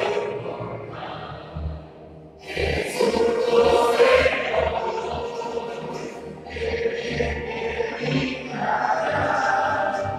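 Recorded anthem played over loudspeakers: a choir singing with instrumental accompaniment and a low beat about twice a second, softer at first and growing fuller about two and a half seconds in.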